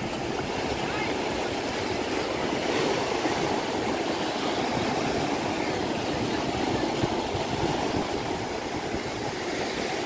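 Ocean surf breaking and washing up the sand in the shallows: a steady rushing wash of waves.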